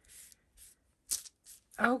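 A baby wipe rubbed in short strokes over a plastic craft sheet, wiping off glue residue: four or five brief swishes.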